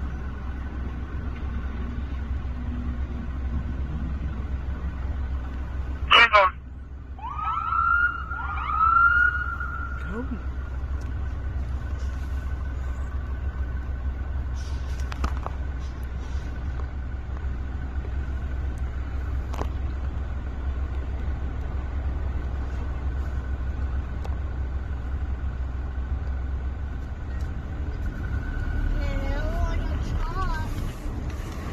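Police car siren giving short signals: a loud blast about six seconds in, then two rising whoops, over a steady low traffic rumble. A wavering siren tone starts up near the end.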